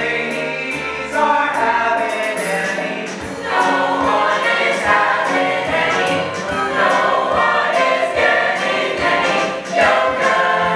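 A large stage cast singing together in chorus, a full ensemble number from a stage musical.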